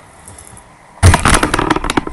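Handling noise from the camera being picked up and moved: a sudden, loud run of crackles, knocks and rubbing against the microphone that starts about a second in, after a quiet first second.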